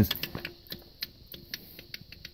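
Light, irregular clicks and small taps, about a dozen over two seconds: handling noise from the camera and hardware being moved around.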